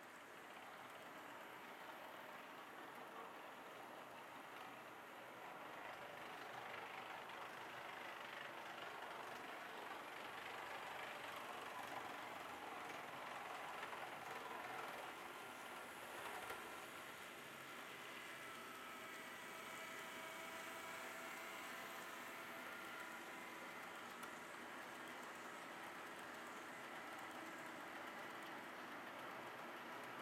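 HO scale model freight train running on sectional track, a faint steady rolling of wheels on rails that grows a little louder in the middle as the train passes close. Faint motor whine from the model diesel locomotives in the second half.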